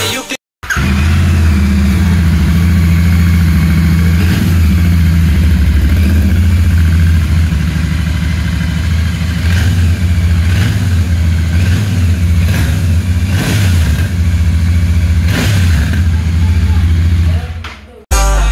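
Royal Enfield Continental GT 650's 648 cc parallel-twin engine running through freshly fitted aftermarket Red Rooster silencers, idling with a deep, steady exhaust note and repeated throttle blips. It starts after a brief gap about half a second in and fades out just before the end.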